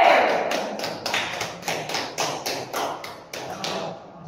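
Table tennis ball tapped in a steady series of light, sharp clicks, about three to four a second, growing slightly softer toward the end.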